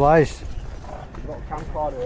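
People talking over the general hubbub of an outdoor crowd.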